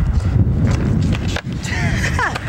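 Skateboard wheels rolling over concrete pavement: a steady low rumble broken by a few sharp clicks. A voice comes in near the end.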